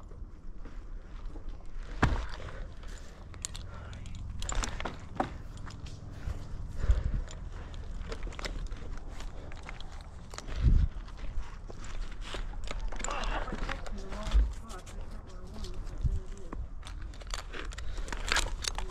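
Close handling noise of a tree climber's gear and body against the trunk, heard through a helmet microphone: scattered knocks, clicks and scrapes, with a heavier thump about two-thirds of the way through and faint voices in the background. The chainsaw hangs idle and is not running.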